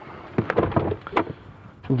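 Third-row folding seat of a SsangYong Rexton being pulled up by its strap: a quick series of clicks and knocks from the seat mechanism and seat back, within the first second or so.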